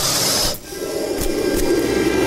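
A hissing sound effect that cuts off sharply about half a second in, followed by a steady low drone of the dramatic background score.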